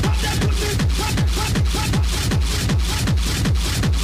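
Schranz hard techno in a live DJ mix: a pounding kick drum at about four beats a second under a dense, hissy layer of hi-hats and percussion, with short high synth blips.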